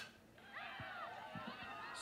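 Faint, distant voices of players and spectators calling out at a softball game, opening with a single sharp click.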